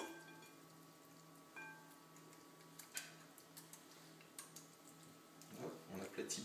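A spoon knocking against a glass mixing bowl as leek and cream filling is scooped out: two knocks, at the start and about a second and a half in, each ringing briefly, then a few fainter clicks.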